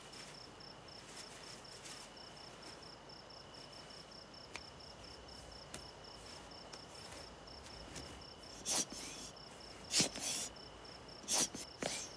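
Crickets chirping in an even, steady pulse over a quiet room. From about nine seconds in, several short, loud breathy puffs cut in over the chirping.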